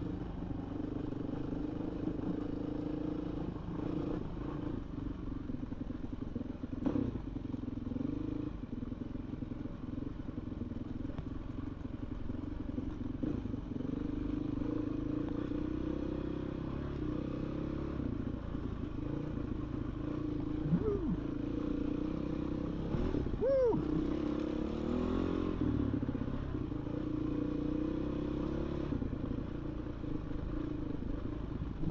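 Dirt bike engine running steadily under way, with a knock about seven seconds in and short rising revs about two-thirds of the way through.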